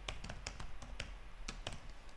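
Typing on a computer keyboard: an irregular run of about ten key clicks.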